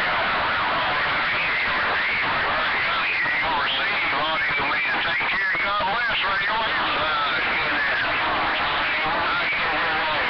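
CB radio receiver playing a distant station's reply through heavy static and interference: the voice comes through garbled and warbling, with a constant hiss under it. The reception is rough, 'a little bit of background coming in' with the signal.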